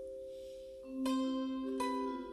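Solo melody plucked on a wooden string instrument held across the lap. The notes ring on with a bell-like sustain, and fresh notes are struck about a second in and again near the end.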